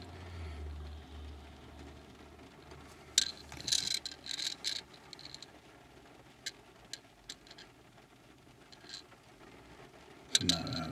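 Quiet car interior: a low hum fades out over the first few seconds, then scattered light clicks and taps follow, densest around three to five seconds in and sparse after.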